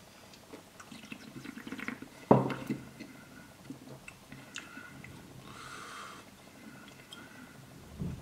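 A person drinking beer from a glass: small sipping and swallowing sounds, then a single sharp knock about two seconds in, followed by faint scattered ticks.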